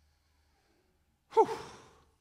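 A man sighing into a close handheld microphone about a second and a half in: a sudden breath with a falling voiced tone that fades within about half a second, after near silence.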